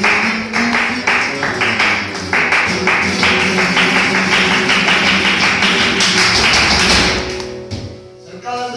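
Flamenco palmas: several people clapping a sharp, fast rhythm over a flamenco guitar. The claps grow denser through the middle and stop abruptly near the end.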